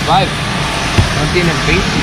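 Voices talking over a steady rushing noise, with a single sharp click about a second in.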